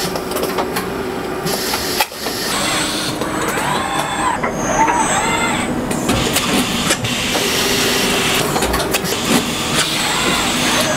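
Industrial robot moving a Tucker TR 610 stud-welding head: its servo drives whine in rising-then-falling glides with each move, over a steady machine hum, with a few sharp clicks.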